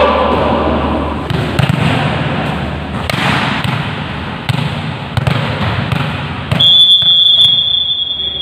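Volleyballs being struck and landing, a string of sharp thuds with players' voices in a large sports hall. Near the end a whistle is blown, one steady high note lasting about two seconds.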